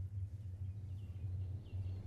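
Quiet outdoor ambience with a low steady hum and a few faint, high bird chirps in the middle.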